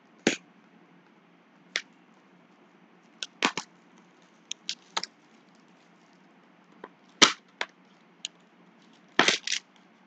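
Clear plastic shrink wrap being peeled off a trading-card hobby box, crackling in short, sharp, irregular snaps. The loudest crackle comes about seven seconds in, and a quick cluster follows after nine seconds.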